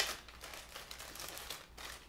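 Paper and packaging crinkling and rustling as they are handled, with a few small clicks.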